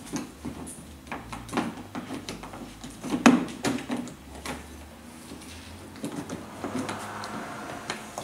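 Irregular small clicks and knocks of hands working plastic clips and parts inside an open pickup door, with one sharper knock about three seconds in.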